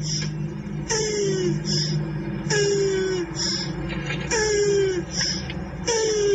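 A voice-like wailing cry repeated four times, each one a falling moan under a second long, coming about every second and a half over a steady low hum.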